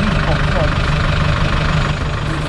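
A four-wheel-drive vehicle's engine idling steadily, with a short bit of voice over it.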